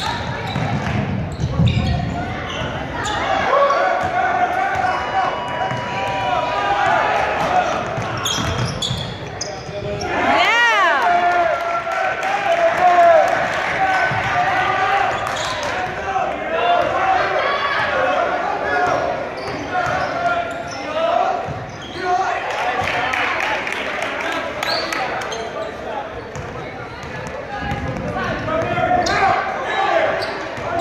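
A basketball dribbled and bouncing on a hardwood gym floor, under steady spectator chatter and calls that echo through the hall. About ten and a half seconds in, a short pitched sound rises and falls.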